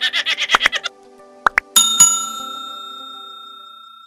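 Background music with a quick even beat stops about a second in. Then come two quick clicks and a bright bell chime struck twice, which rings on and slowly fades out: the click-and-notification-bell effect of a 'like and subscribe' button animation.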